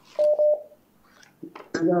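A short, steady electronic telephone beep of one pitch, lasting about half a second, on the call-in phone line. A man's voice starts near the end.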